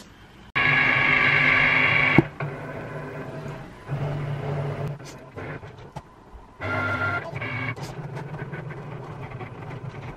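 Lilac Cricut Explore Air 2 cutting machine working through a sheet of printed stickers, its motors whirring as the carriage and mat move. Loudest for about a second and a half just after the start, then quieter, changing whirs with a louder spell about seven seconds in.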